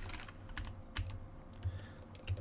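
A few scattered keystrokes on a computer keyboard, light separate taps while code is typed and edited.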